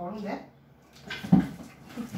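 Brief voice sounds: a short whining vocal sound right at the start, then a few short, sharp syllable-like sounds from about a second in.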